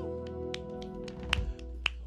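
A live band's final held chord rings out and fades, with a handful of sharp, scattered hand claps over it.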